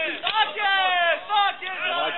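Men's voices shouting in a series of loud calls that fall in pitch.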